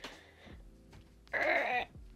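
A short strained effort noise forced through clenched teeth, about a second and a half in, with a faint breath near the start, made while straining to squeeze out a very solid lip balm.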